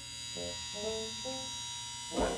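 Cartoon mobile crane's winch motor whirring steadily as it lifts a load, with a few short, soft music notes over it in the first half.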